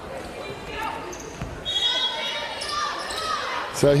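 Indoor basketball-court sound: sneakers squeaking on the hardwood floor over the murmur of a gym crowd, with several short high squeaks from about halfway through.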